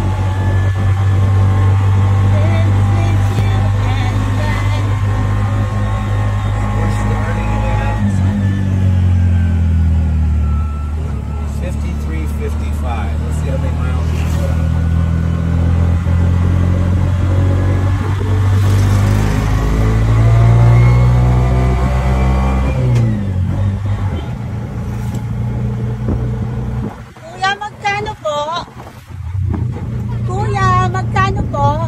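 Tuk tuk's small engine running under way, heard from inside the passenger cab. Its pitch climbs and then drops sharply at gear changes about eight seconds in and again a little after twenty seconds. Near the end the engine eases off and a voice is heard over it.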